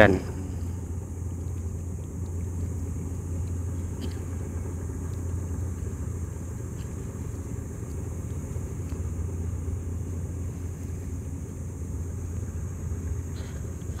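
A steady low outdoor rumble with no clear event in it, and a few faint clicks.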